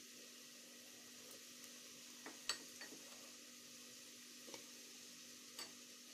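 Faint, steady sizzle of chopped onions frying in oil in a metal pot, with a few light clicks of a spoon against the pot as spice powder is added.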